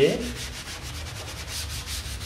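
A worn kitchen dish sponge, wet with plain water, scrubbed in quick, even back-and-forth strokes over the tacky adhesive surface of a screen-printing pallet, lifting off lint left by the last fabric while the adhesive stays on.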